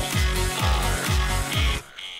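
Electronic dance track playing back: a kick drum that drops in pitch on every beat, about two hits a second, under synths and hi-hats. It stops abruptly near the end.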